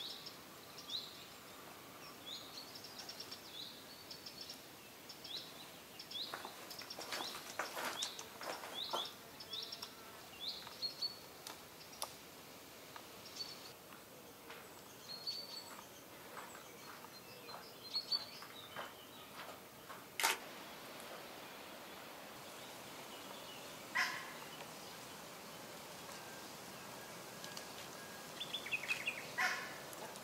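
Small birds chirping in quick repeated phrases, busy through the first half and thinning out later, with a few sharp clicks cutting in.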